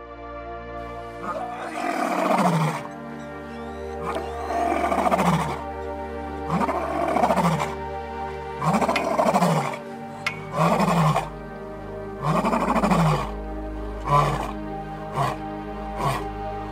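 A male lion roaring: a series of about six long, deep roars falling in pitch, roughly every two seconds, then shorter, quicker grunts near the end, the usual close of a lion's roaring bout. Background music with sustained notes plays underneath.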